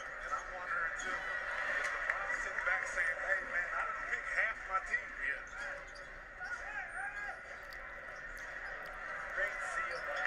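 Television basketball commentators talking over the game broadcast. The audio sounds thin, with almost no low end.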